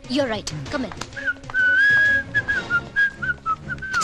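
A whistled tune, a thin high melody with short slides between notes, starting about a second in over light clicking percussion. A brief spoken word comes at the very start.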